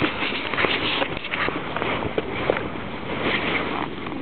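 Footsteps swishing through grass with rustling, heard as an uneven patter of soft brushes and light clicks.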